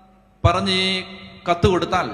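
A man's voice through a microphone and loudspeakers, intoning one long steady syllable about half a second in, then a few quick words near the end, each trailing off in a hall echo.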